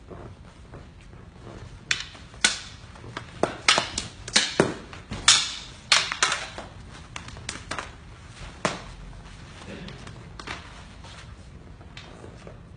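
Eskrima sticks clacking against each other in quick, irregular strikes, densest in the middle, with a few scattered knocks later.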